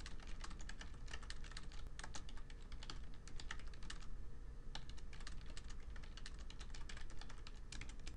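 Typing on a computer keyboard: a run of irregular key clicks with a brief pause a little past halfway, over a low steady hum.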